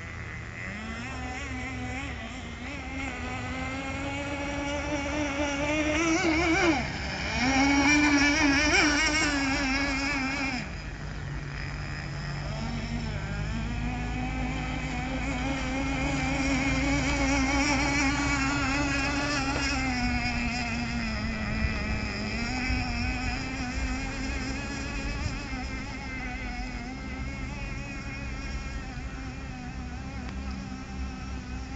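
The 3.5 cc nitro engine of an RC boat running at speed, a high buzzing whine whose pitch wavers and rises and falls as the boat runs across the water. It is loudest between about seven and ten seconds in, then drops off sharply and carries on more steadily.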